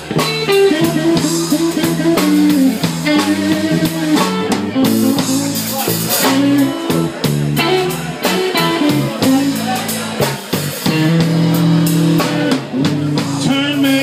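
A live blues band playing: a lead electric guitar with bent notes over bass and a drum kit.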